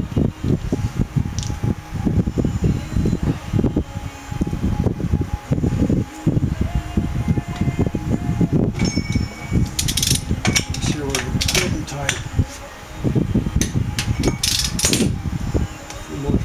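Wind buffeting the microphone, with the Toyota Land Cruiser 100-series brake rotor and hub spun by hand on freshly torqued wheel bearings to settle them. Two clusters of sharp metallic clicking come about ten seconds in and again near the end.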